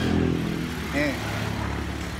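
A motor vehicle's engine running with a steady low drone as it comes along the road toward a loose metal drain cover.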